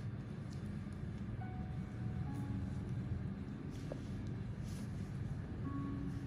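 Steady low rumble of background noise, with a few faint short steady tones over it.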